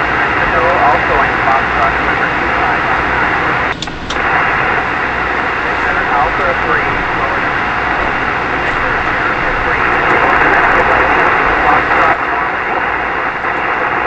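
Two-metre (144 MHz) single-sideband receiver audio: steady band hiss with a weak distant voice barely readable under it, a station heard by sporadic-E skip. The hiss drops briefly with a couple of clicks about four seconds in.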